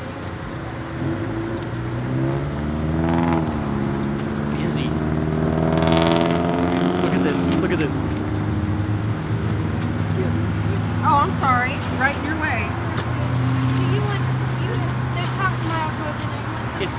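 A car engine running close by, its pitch rising and falling twice in the first half as it moves, then settling into a steady low hum, with road traffic behind.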